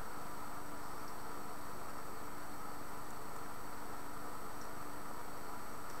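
Steady background hiss with a faint, even low hum; no distinct sounds stand out.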